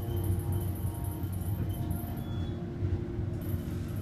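Hydraulic elevator travelling up between floors, heard from inside the cab as a steady low hum with a faint steady whine.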